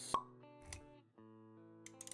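Background music with sustained notes, with a sharp pop sound effect just after the start, ringing briefly, and a softer thud a little over half a second later, the sounds of an animated intro.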